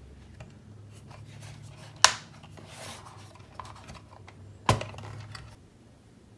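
Plastic clicks and rattles as the lid of a Rollo thermal label printer is unlatched and swung open, with two sharp loud clicks about two and a half seconds apart.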